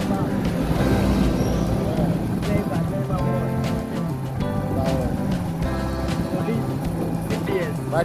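Music with a singing voice over a steady beat and bass line.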